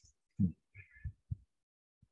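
A man's soft, low chuckle: three short voiced breaths of laughter within about a second.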